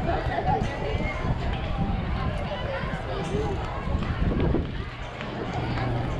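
Indistinct voices of players and coaches calling out across a youth baseball field, over a steady low rumble.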